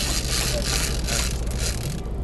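Big-game trolling reel being cranked in on a hooked fish, a scraping whir that surges about every half second with the turns of the handle. Underneath is the steady low drone of the boat's engine.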